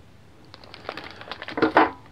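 Clear plastic packaging bag crinkling as it is handled: irregular crackles starting about half a second in and growing louder near the end.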